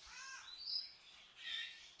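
Faint bird calls: a few short calls, some near the start and more about midway and near the end, over a light background hiss.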